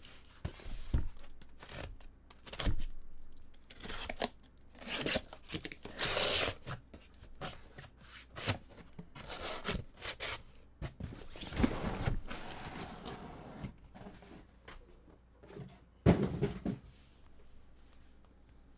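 A cardboard shipping case of trading-card boxes being torn open: tape ripping and cardboard flaps scraping in a series of irregular rips and rubs, then boxes sliding against the cardboard. A single sharp thump near the end is the loudest sound.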